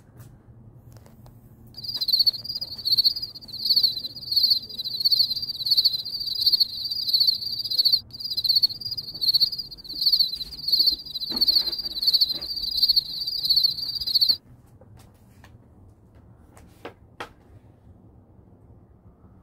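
A cricket chirping in a steady rhythm, about three high trilled chirps every two seconds, loud against a quiet background. It starts suddenly about two seconds in and cuts off abruptly a few seconds before the end.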